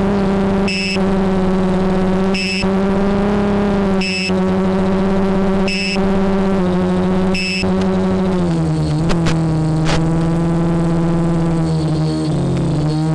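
Multirotor drone motors running with a steady electric hum and a high beep repeating about every 1.7 seconds, five times. The motors' pitch drops about two-thirds of the way in, followed by two sharp clicks.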